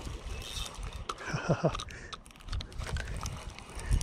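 A man laughing briefly about a second and a half in, over low wind rumble on the microphone, with a few scattered small clicks.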